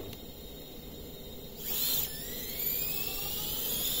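Brushless 3450 kV motors on a propless 5-inch FPV quad, powered from a 3S battery, spin up about one and a half seconds in: a high whine that rises slowly in pitch as the throttle comes up. They run without the heavy jitter, with only a slight oscillation, a sign that the P gains are a little high.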